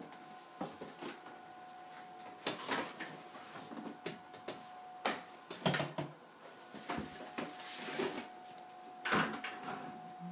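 Irregular knocks, clunks and scrapes of cleaning things being handled and moved about on a wooden floor, the loudest about two and a half, five and a half and nine seconds in, over a faint steady hum.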